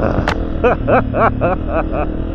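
Honda CRF250F dirt bike's single-cylinder four-stroke engine running steadily while riding, with a person laughing over it in short bursts, about three a second, from about half a second in.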